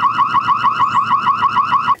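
The Netvue Birdfy smart bird feeder camera's audible alarm sounding: a rapid warbling siren tone, each pulse sweeping upward, about seven pulses a second. It cuts off suddenly just before the end.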